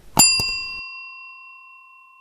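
A click and then a single bright bell ding that rings on and slowly fades: the notification-bell sound effect played as the bell icon is clicked.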